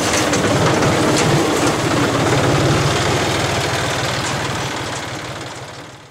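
Small boat's engine running steadily with a fast low chugging, fading out near the end.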